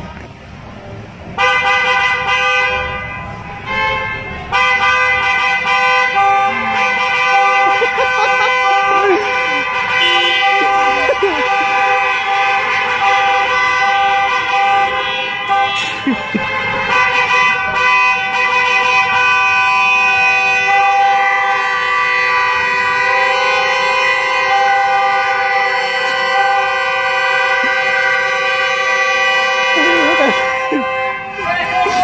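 Car horn held down, starting about a second and a half in, breaking briefly near four seconds, then blaring steadily on and on, with shouting voices now and then underneath.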